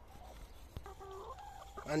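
Domestic hens clucking softly, a few short, faint calls.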